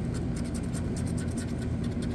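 Scratch-off lottery ticket being scraped with a hand-held scratcher, a run of quick rasping scratch strokes over a steady low hum.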